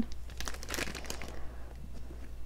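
Clear plastic bag crinkling as it is handled, a run of light, irregular crackles that thin out about halfway through.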